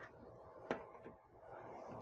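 A single light click about two-thirds of a second in, with a fainter tick soon after, from gloved hands handling the partly disassembled laser printer's chassis and parts; otherwise quiet room tone.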